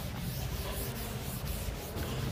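A cloth wiping chalk off a chalkboard: soft, steady rubbing in repeated strokes.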